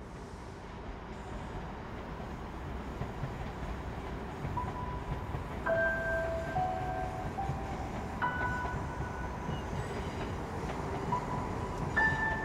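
Low, steady rumble of a passing train, fading in from silence and building. From about four and a half seconds in, sustained bell-like tones of ambient music come in over it, shifting in pitch in steps.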